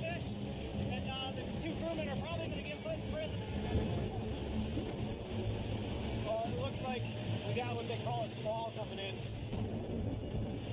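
A small boat's motor running steadily under way through rough water, with wind on the microphone and faint voices in the background.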